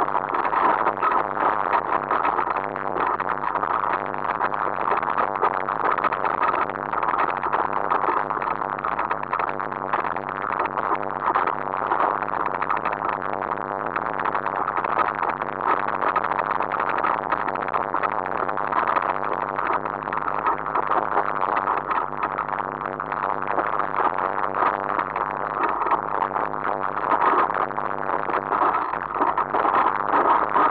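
Continuous rattling noise of a mountain bike descending a rough, stony dirt trail, picked up by a camera mounted on the bike or rider: tyres crunching over loose rocks and gravel, with the mount shaking.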